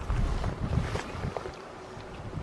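Wind buffeting the microphone in low rumbling gusts, strongest in the first second and then easing.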